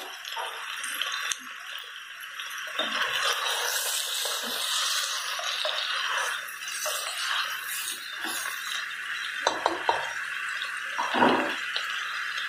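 Bacon, calabresa sausage and pork ribs sizzling steadily as they fry in a pressure-cooker pot. In the second half a spoon stirs them and knocks or scrapes against the pot a few times.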